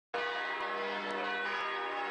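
Church bells ringing, a dense mix of overlapping bell tones that holds steady.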